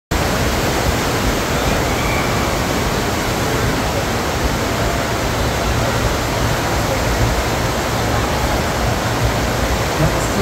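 Steady rush of water from a FlowRider sheet wave machine: a thin, fast sheet of water pumped up and over the padded ride surface, with no break or change in level.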